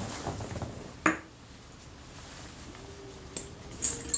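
Small metal lens-mount parts handled and set down on a paper-covered bench: one sharp clink about a second in, then a few lighter clicks near the end.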